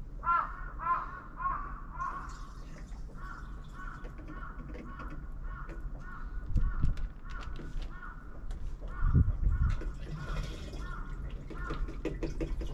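A bird cawing, several harsh calls in quick succession about a second in, then a long run of evenly spaced shorter calls, about two a second. Two dull low thumps come partway through and near the end.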